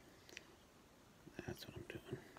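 Near-silent room tone, with a brief soft whisper or mutter from a person, made up of small clicks, about a second and a half in.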